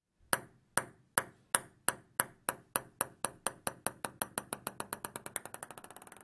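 A table tennis ball bouncing to rest on a hard surface: a train of light, sharp clicks that come ever faster and fainter until they run together and fade out near the end.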